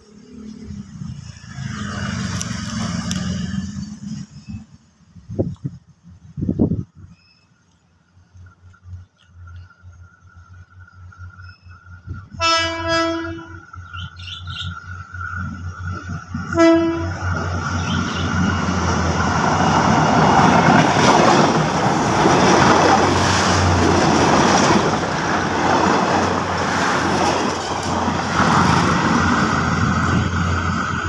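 Thai railway NKF diesel railcar sounding its horn, one blast of about a second and then a short toot some four seconds later. The noise of the approaching train, engine and wheels on the rails, then builds up loud and stays loud.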